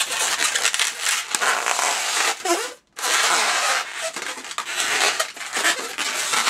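Latex twisting balloon rubbing and squeaking under the hands as a whole loop of it is twisted. There is a short break a little before halfway.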